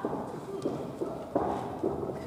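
A series of light knocks, about two a second, in a wrestling hall.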